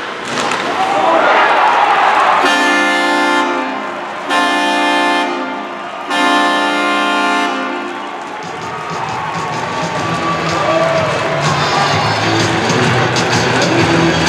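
Arena crowd cheering, then an arena goal horn sounding three blasts of about a second each, marking a home-team goal. Arena music then plays over the crowd.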